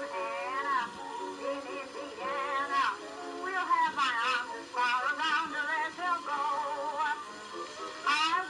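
An early-1920s acoustic-era gramophone recording of a woman singing a popular song with a wide vibrato. The sound is thin, with no bass.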